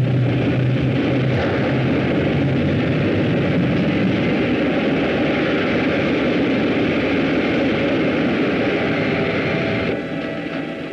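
A loud, steady rushing roar of noise, a film sound effect, easing off near the end.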